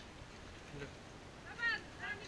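A brief high-pitched call about one and a half seconds in, its pitch bending, over a quiet background.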